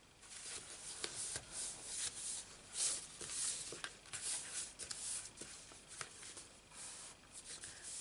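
Hands sliding over and pressing down cardstock, a stamped panel being smoothed onto a folded card base: a run of papery rustles and light scrapes with a few small taps.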